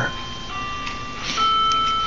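Bell-like ringing tones: one note begins about half a second in and a slightly higher, louder one near the middle, each held and slowly fading.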